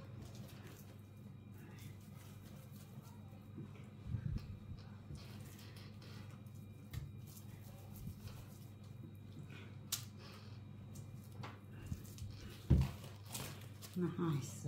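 Hands squeezing and rolling a meatball mixture of minced pork and soaked bread over a glass bowl: faint, soft squishing with a few light taps, the loudest a dull thump near the end, over a low steady hum.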